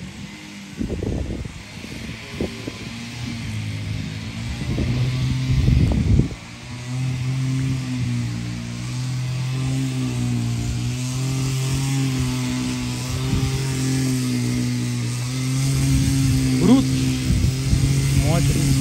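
The engine of a grass-cutting machine running, rough and uneven for the first six seconds, then settling into a steady drone. A few short rising whines come near the end.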